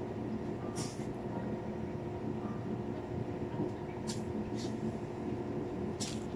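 A steady droning hum of restaurant ventilation, the extraction running over the grill tables, with three brief soft rustles of a wet hand towel being wiped over the hands.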